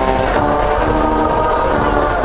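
A baseball cheering section in the stands singing a fight song in unison over band accompaniment, with held notes that change pitch about every half second, above a steady stadium crowd noise.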